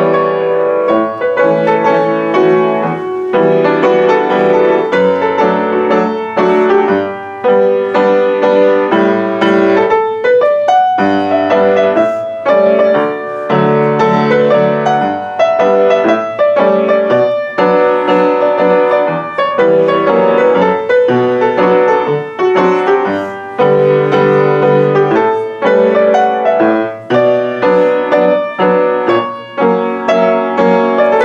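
Solo upright piano played continuously: a song arrangement with a melody in the upper notes over chords and bass notes.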